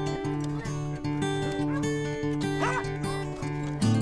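Acoustic guitar background music, with a beagle giving a short, high, wavering whine about two and a half seconds in.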